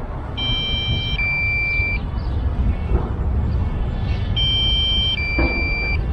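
DJI Mavic Air remote controller sounding its low-battery warning: a two-tone electronic beep pattern, higher then lower, heard twice about four seconds apart. It signals that the drone's battery is running low, at about 18%.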